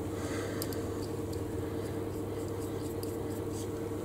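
Steady low hum with a few faint small clicks as small metal and wooden bottle-stopper parts are handled by hand.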